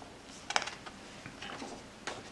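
A page of a hardcover picture book being turned by hand: a sharp paper snap about half a second in, then softer rustling as the page is laid over.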